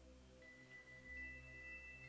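Very faint background music: a soft sustained low chord, with two high steady tones coming in, one about half a second in and a second about a second in.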